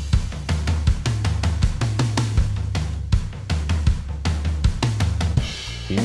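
Drum kit playing a steady groove: kick, snare and cymbal or hi-hat hits several times a second, over a low bass line that steps between notes.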